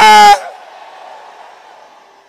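A man's loud, drawn-out wordless shout into the microphone, cutting off about a third of a second in, with reverberation dying away over the next two seconds.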